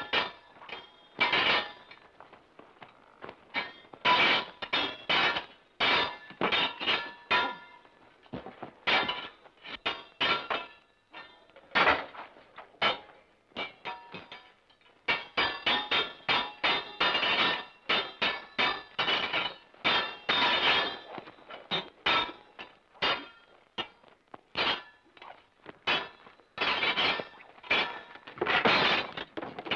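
Swords clanging together again and again in a sword fight. Each strike rings briefly, in quick irregular runs, with a short lull a little before halfway.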